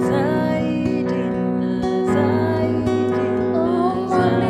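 Slow worship music: sustained keyboard chords with acoustic guitar strumming, and a wordless vocal line gliding over them near the start and again near the end.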